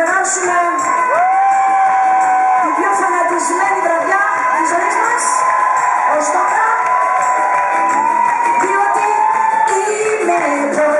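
Live pop music: a woman singing into a microphone over a band, with a couple of long held notes, the longest in the second half. Crowd voices and cheering come through from the audience.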